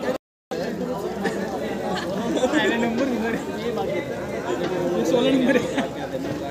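Overlapping chatter of several players' voices calling and talking on the field. The audio drops out to dead silence for a moment just after the start.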